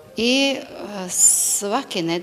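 A woman speaking, with a hissed 's'/'sh' sound near the middle.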